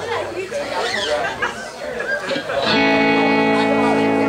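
Chatter and voices, then about two-thirds of the way in a live band strikes a chord on electric guitars and keyboard and holds it steady.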